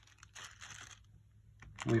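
Faint crinkling and rustling of a plastic zip-top bag as it is set down into a plastic tray, with a few light ticks in the first second, then quiet.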